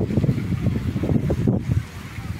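Wind buffeting a phone's microphone outdoors: a gusty, uneven low rumble that eases off near the end.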